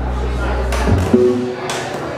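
A live rock band playing amplified in a bar: a held low bass note for about the first second, then drum and cymbal hits with electric guitar.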